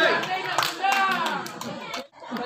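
Scattered hand-clapping from the crowd at a sepak takraw match, with several people talking and calling out over one another.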